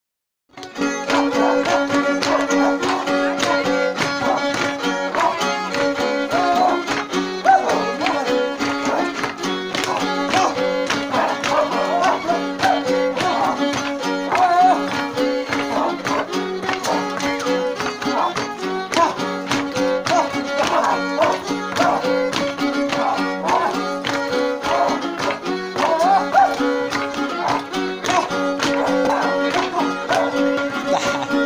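Traditional Huastec violin music for dancing: a fiddle melody over a steady rhythmic accompaniment, starting about half a second in.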